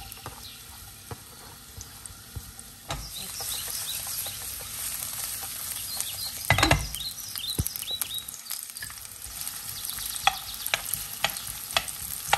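Sliced onions sizzling in vegetable oil in a frying pan, the sizzle getting louder about three seconds in as the oil heats up. A spatula stirs them, with sharp knocks against the pan; the loudest comes about halfway through.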